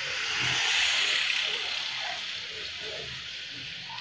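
A rushing hiss that swells about a second in and then slowly fades.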